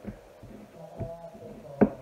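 A low steady hum with a small click about a second in and a louder sharp knock near the end.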